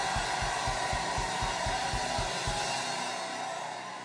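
Live band music with a fast, driving drum beat, about four to five low thumps a second, under a wash of cymbals. The drumming stops about two and a half seconds in and the music fades down.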